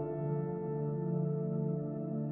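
Slow, soft piano lullaby music: a chord struck just before keeps ringing and fading over a low sustained tone, with no new notes played.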